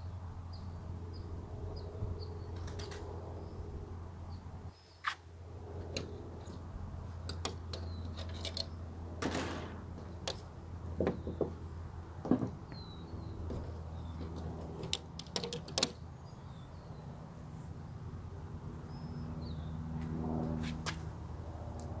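A rubber wiper refill being slid into the metal channel of a rear window wiper blade, heard as intermittent soft scrapes and sharp little clicks of rubber and metal. A steady low hum runs underneath, with faint bird chirps.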